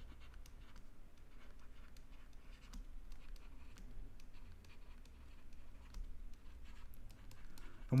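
Stylus writing on a tablet screen: faint, irregular taps and short scratches as words are handwritten, over a low steady hum.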